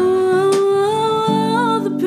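A singer holds one long wordless note, rising slightly and wavering near the end, over strummed acoustic guitar chords.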